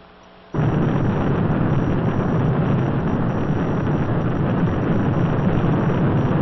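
Saturn IB rocket's first-stage engines in powered ascent: a loud, steady, deep rumbling rush of noise that cuts in suddenly about half a second in.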